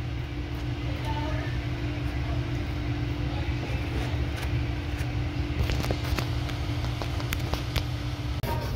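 Steady low machine hum with a constant pitched tone, like room air conditioning or a refrigeration unit. A few light clicks of a plastic fork against a foam food container come in the second half.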